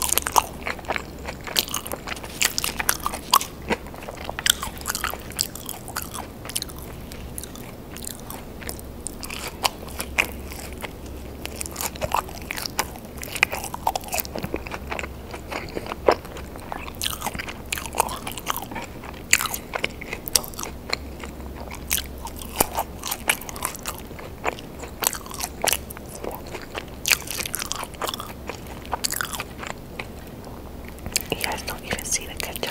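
Close-miked chewing and biting of seasoned French fries, a dense run of moist mouth clicks and crisp crunches, over a faint steady low hum.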